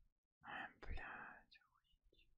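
Near silence, with a faint, brief whispered mutter from a person about half a second in.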